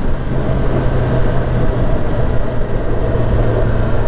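Kawasaki ZX-10R's four-cylinder engine running steadily at city speed, heard from the saddle as a constant low hum under heavy wind rush, the bike easing off slightly as it slows.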